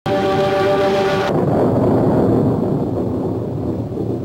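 Film soundtrack: a held, horn-like chord that breaks off about a second in, giving way to a low, dense rumble.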